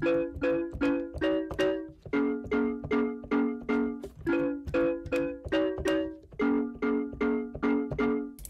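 Short keyboard synth chord stabs played live on a MIDI keyboard in a steady repeating rhythm, about three a second, with no drums behind them.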